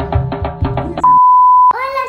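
Upbeat background music with a steady beat that cuts off about halfway, then a single loud, steady electronic beep lasting over half a second. A voice starts just before the end.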